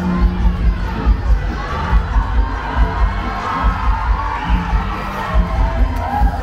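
Busy crowd hubbub over music with a steady bass beat, pulsing a few times a second.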